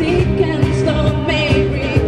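A live acoustic band playing a pop-rock song: a woman singing lead over strummed acoustic guitars, bass guitar and cajón, with the beat kept by light percussive strokes.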